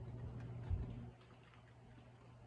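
Pottery-wheel spinner turning a painted canvas: a steady low motor hum with light, evenly spaced ticks. A low thump comes a little under a second in, and the hum drops in level just after.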